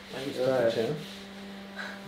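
A person speaking a few words in the first second, over a faint steady hum.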